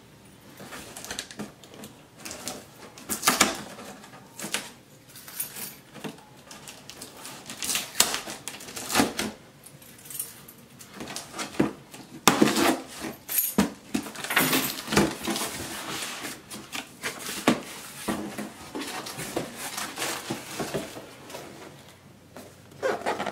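A key scraping and slitting packing tape on a cardboard box, then the box flaps pulled open and the cardboard and a boxed part handled: irregular scrapes, rustles and light knocks, busiest about halfway through.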